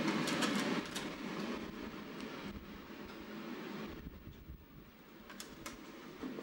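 Papers and small objects handled on a desk: rustling, with a few light clicks and knocks, over a low rumbling background that is stronger in the first second.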